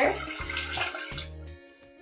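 Fresh orange juice poured from a glass into a glass pitcher: a splashing liquid stream that tapers off and stops about a second and a half in.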